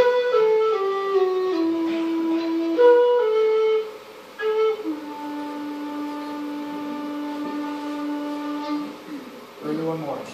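Solo flute playing a slow folk melody: a falling run of notes over the first two seconds, then a phrase that ends on a long, low held note from about five to nine seconds in.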